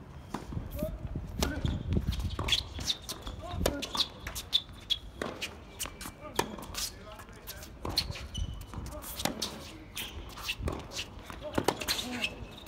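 Tennis rally on a hard court: repeated sharp hits of the ball off the rackets and its bounces on the court, with players' scuffing footsteps.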